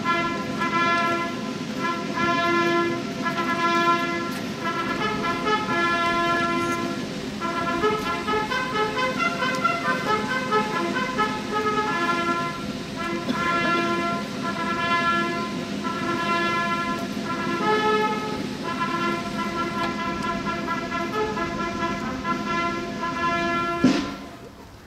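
Military brass band playing music of held, changing chords during the flag hoisting. The music cuts off abruptly at the end.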